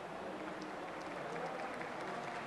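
Low background noise of a room with faint, indistinct voices and a few light clicks, during a pause between talkers.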